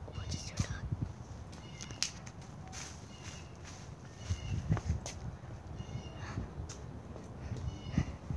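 Short, high-pitched animal calls repeat several times, over footsteps and handling noise.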